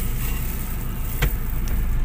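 Steady low rumble of a Honda automatic car's engine and tyres heard from inside the cabin as it drives along, with one sharp click about a second in.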